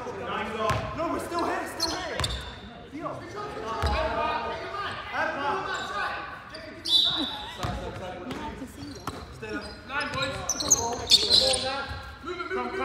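A basketball bouncing a few times on a wooden sports-hall court, each bounce a sharp thud, amid voices carrying through the hall's echo.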